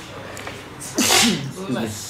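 A man sneezes once about a second in, a loud, sudden burst.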